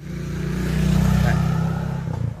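A motor vehicle's engine running close by, swelling to its loudest about a second in and then easing off.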